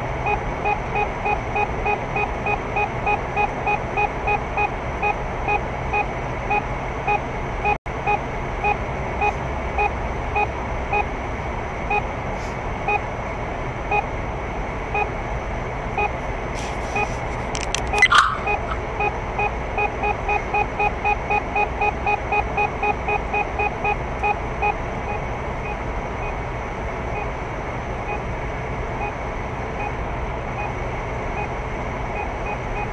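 In-car speed-camera warning device beeping in a rapid, regular series, warning that the car is over the 80 km/h limit in a speed-measuring section. The beeps slow down partway through, speed up again after a short louder chirp, and stop a few seconds before the end. Steady car road noise runs underneath.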